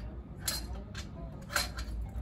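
Stainless steel bench scale base knocking against the stainless steel cart frame as it is set into place: two metallic clinks, about half a second in and a second and a half in, the second the louder.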